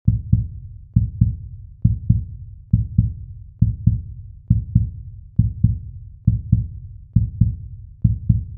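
Heartbeat-style intro sound effect: deep low thumps in pairs, a strong beat then a second one about a quarter of a second later, repeating steadily about once a second, nine pairs in all.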